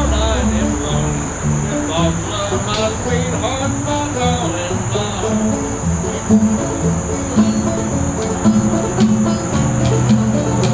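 Old-time string band playing an instrumental break: upright bass notes and plucked acoustic guitar strings carrying the melody. A steady, high-pitched chorus of crickets runs underneath.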